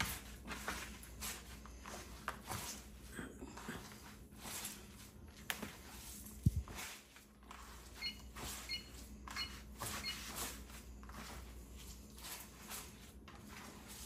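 Hands kneading salt into crumbly fresh cheese curds in a bowl: faint, irregular squishing and crumbling. About halfway through there is one low thud, and a little later a short run of electronic beeps.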